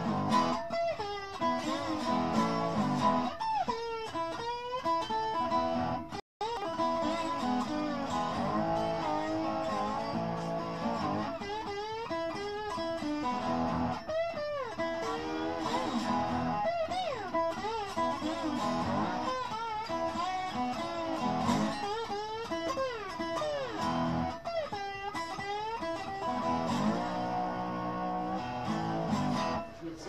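Lap slide guitar played with a pick through overdrive, a blues in E with notes sliding up and down in repeating phrases. The sound cuts out completely for a moment about six seconds in.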